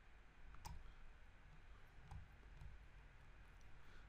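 Near silence: quiet room tone, with one faint click a little over half a second in.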